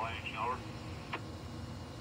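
A man's voice trailing off in the first half-second, then quiet room tone with one small click about a second in.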